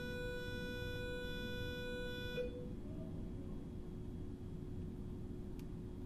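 A steady pitched tone that stops about two and a half seconds in, over a fainter steady low hum and hiss.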